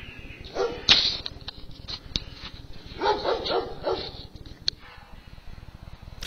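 A dog barking and whining in short bursts, about half a second in and again around three to four seconds in, with a single sharp click near one second.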